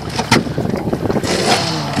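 Small four-stroke outboard motor, a 15-horsepower Yamaha, running slowly as a steady low hum, with wind and water noise around the aluminium boat.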